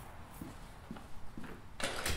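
A few soft footsteps on a hard indoor floor, about two a second, then a sharp, louder knock near the end.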